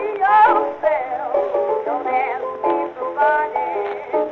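A 1920s blues record: a woman singing with a wavering vibrato over instrumental accompaniment. The sound is narrow and thin, with little top end.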